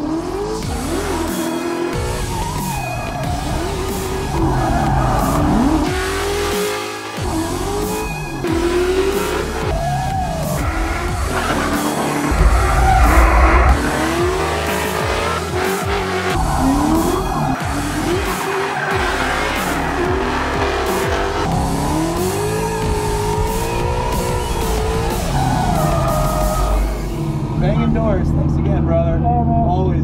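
Drift Mustang sliding under power: the engine revs up and down again and again through the slides, with tires squealing on the pavement. Background music runs underneath.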